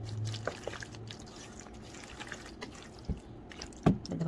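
A spoon stirring a wet mung bean and flour batter in a metal bowl: soft wet squishing with scattered clicks of the spoon on the bowl. There is a knock about three seconds in and a louder knock just before the end.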